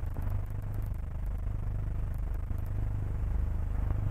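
Background noise of an old film soundtrack: a steady low hum with faint hiss and scattered crackle.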